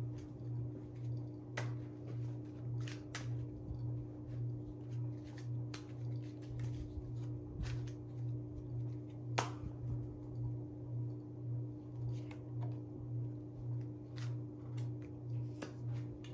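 Scattered sharp snaps and clicks of a playing-card deck being handled and flicked in the hands, the loudest about nine seconds in, over soft background music with a steady low pulse.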